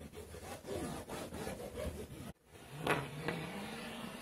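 Rubbing and scraping handling noise of a hand and a handheld camera moving against a large sheet of paper. It breaks off suddenly about two and a half seconds in, then comes a sharp click and a low hum.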